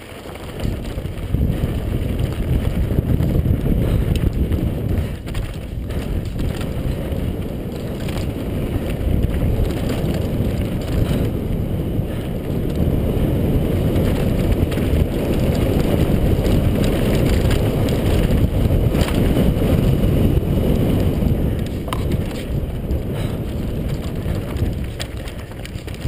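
Wind buffeting a helmet-mounted camera's microphone on a fast downhill mountain-bike run, with the knobby tyres rolling and crunching over loose rock and gravel and the bike rattling over bumps. The noise jumps up about a second in as the bike picks up speed.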